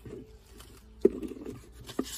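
A hand rummaging in a car's plastic center console bin, small items scraping and knocking against it. A sharp knock about a second in is followed by a brief scrape, and another click comes near the end.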